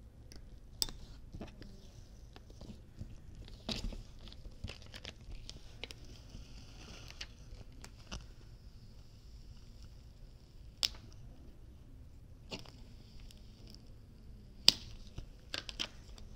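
Black Siser EasyWeed heat transfer vinyl being weeded by hand: the excess vinyl peeled up off its clear plastic carrier with a faint crackling rustle, in two longer stretches, with a few sharp ticks in between.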